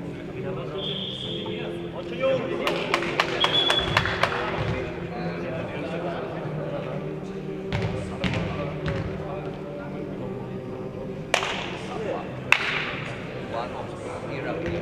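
Futnet ball being kicked and bouncing on the hard court floor: scattered knocks, with two sharp loud impacts near the end, over a background of voices in the hall.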